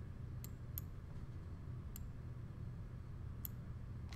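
Quiet room tone with a steady low hum, broken by four faint, sharp clicks spread through it.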